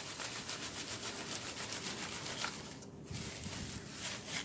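Dried, shredded moss being rubbed by hand across the mesh bottom of a plastic crate to sift it: fast repeated rustling strokes, with a brief lull about three seconds in.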